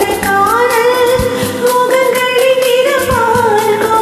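A woman singing a Tamil film song over a karaoke backing track, her voice gliding and bending through the melody.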